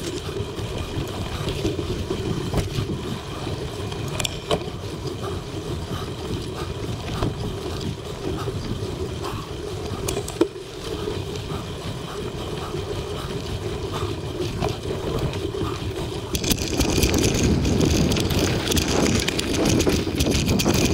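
Mountain bike rolling over a dirt singletrack: steady tyre noise with scattered clicks and rattles from the bike and one sharp knock about halfway. The noise gets louder and hissier about three-quarters of the way in, with wind on the microphone.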